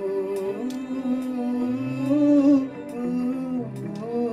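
A man singing a Hindi film song live into a microphone, drawing out long wavering notes without words between the sung lines, with a step down in pitch near the end.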